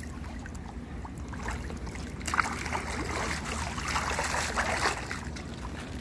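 Pool water splashing and churning as a swimmer goes under and kicks up into a handstand against the pool wall. The splashing builds about two seconds in and is strongest through the middle seconds.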